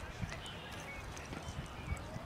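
Outdoor ballfield ambience: an uneven low rumble on the microphone with a couple of soft thumps, about a quarter second in and near the end, and faint distant voices.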